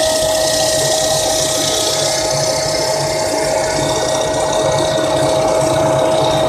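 Electric leaf blower-vacuum running steadily as a workshop dust extractor, sucking air through a flexible plastic hose. It gives a constant whine over a rush of air.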